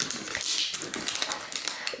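Fingers and fingernails picking and peeling at a paper label on a hard plastic toy clamshell: a run of small scratchy clicks and taps.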